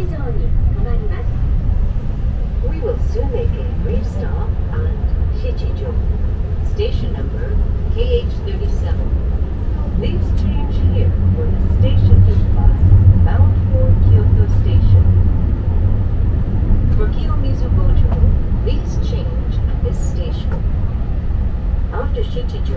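Running noise inside a Keihan limited express train car: a steady low rumble that grows louder for a few seconds around the middle, with passengers talking in the background.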